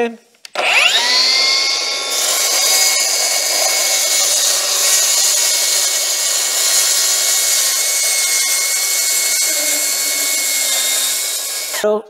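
Milwaukee M18 FUEL cordless plunge track saw spinning up with a rising whine, then running steadily while it cuts through a melamine board along its guide rail for about ten seconds. The sound cuts off just before the end.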